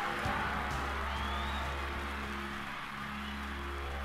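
Recorded music from a vinyl DJ mix: a held low bass tone under a noisy wash of sound, with no singing.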